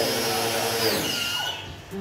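Small electric pressure washer running while its foam gun sprays soap foam, a steady motor hum with spray hiss. The motor note drops off about halfway through and the hiss dies away near the end.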